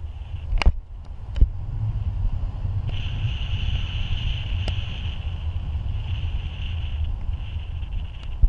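Wind buffeting the microphone in tandem paraglider flight: a steady low rumble, with a higher hiss joining about three seconds in. Two sharp knocks come in the first second and a half.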